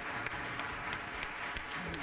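Audience applauding steadily at the end of a talk: a dense, even patter of many hands clapping.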